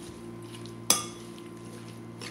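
A metal spoon stirring a wet, chunky masala mix of tomatoes, herbs and yogurt in a glass bowl, with one ringing clink of spoon against glass a little under a second in. A steady low hum runs underneath.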